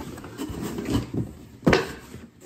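Cardboard boxes being handled and shifted, with rustling scrapes and a sharper cardboard knock near the end.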